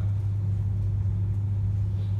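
A steady low hum with no speech and no other events.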